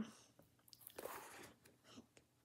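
Near silence, with a few faint small clicks and a soft rustle about a second in.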